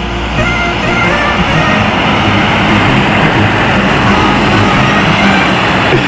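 A semi-truck passing on a wet highway: a rushing noise of tyres on the wet asphalt swells as it goes by, over background music.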